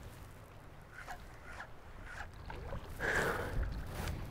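Shallow water sloshing around a wading angler's legs, with wind rumbling on the microphone. A louder rush of noise comes about three seconds in.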